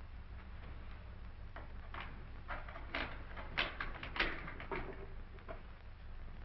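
A run of irregular light clicks and knocks, starting faint and growing louder past the middle before thinning out near the end, over a steady low hum.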